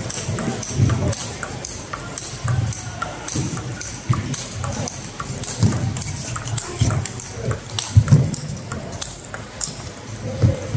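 Table tennis rally: the celluloid-type plastic ball clicking sharply off rackets and the table every half second or so, with the knocking of rallies at other tables around it.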